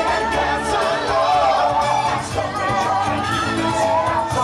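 Parade soundtrack: an upbeat song with singing over a steady beat.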